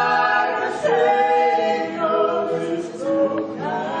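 A small mixed group of singers, women and men, singing a hymn together in harmony, holding long notes that move to new chords about a second in and again near the end.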